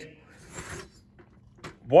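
Faint handling noise: a soft rustle about half a second in, then a few small clicks, before a man's voice starts near the end.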